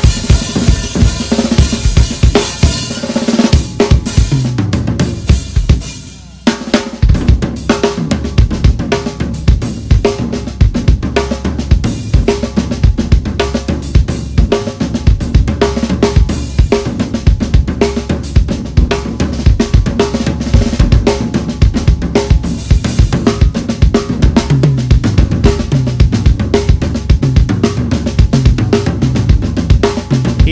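Solo drum kit playing on a DW kit with Zildjian K Custom cymbals: rapid strokes on snare, toms and double bass drum under cymbals and hi-hat. The playing briefly drops away about six seconds in, then comes back with a loud hit and carries on just as fast.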